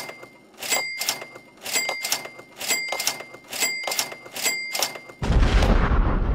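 Outro sound effects: a sharp click with a short bell-like ring, repeated about once a second, then about five seconds in a sudden loud boom with a deep rumble that keeps going.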